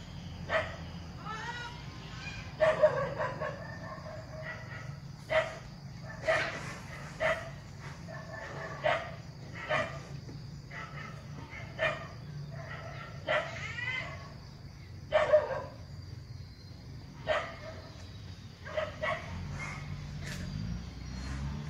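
A dog barking in short single barks, one to two seconds apart, with a steady low hum behind.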